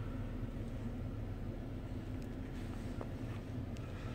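Low, steady hum inside the cabin of a 2012 Mercedes ML350, with a few light clicks.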